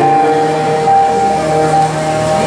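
Keyboard playing long, held organ-style chords, the notes changing every half-second or so.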